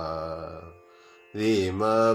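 A man singing a devotional Carnatic-style melody. He holds a wavering note that fades out just under a second in, pauses briefly, then starts singing again.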